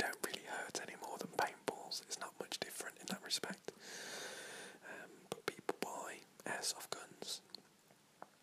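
A man whispering, with many short sharp clicks between the words.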